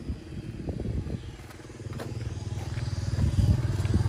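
A motor vehicle's engine running with a low rumble that grows steadily louder from about a second in.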